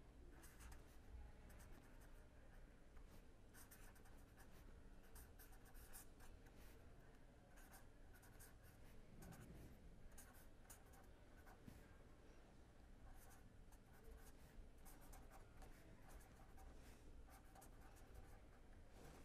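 Faint scratching of a pen writing on paper, in short irregular strokes, over a low steady hum.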